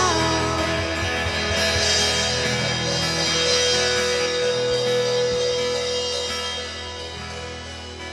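Worship band playing on without singing: sustained chords with guitar, one long held note about midway, getting quieter toward the end.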